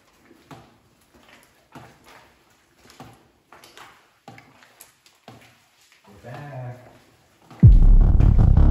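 Spirit box sweeping through radio stations: short, quiet, choppy bursts of static and clipped voice fragments about every half second to second. Loud music cuts in near the end.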